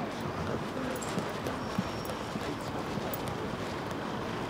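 Street background noise with faint, irregular taps, typical of footsteps on pavement.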